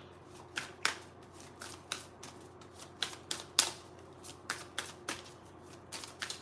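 A deck of reading cards being shuffled by hand: a run of quiet, irregular card snaps and clicks.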